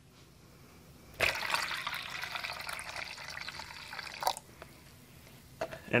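Automotive paint reducer poured into a plastic paint mixing cup of red base coat, bringing it up to the mark for a one-to-one mix. The steady pour starts about a second in and stops after about three seconds.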